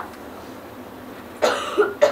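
A man coughing: two quick coughs close together about a second and a half in, after a quiet stretch of room tone.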